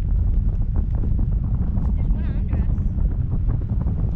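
Wind buffeting the microphone of a camera flying under a parasail: a loud, steady low rumble.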